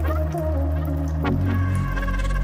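Background electronic pop music: steady bass notes with a sliding melody line over them, changing chord about a second in.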